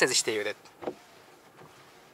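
A man's voice for about the first half-second, then quiet car-cabin background with a brief faint sound about a second in.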